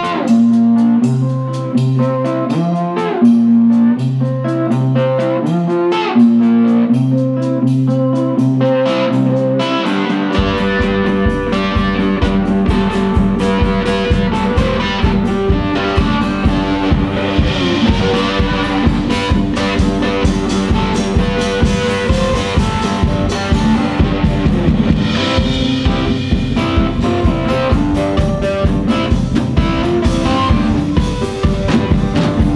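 Electric slide guitar played with a metal slide in a slow blues style, held notes gliding between pitches. At first it plays alone. About ten seconds in a drum kit comes in with a steady beat and cymbals.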